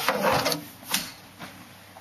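Handling noise as the camera is moved: a short rubbing scrape, then two sharp clicks about a second in and near the middle.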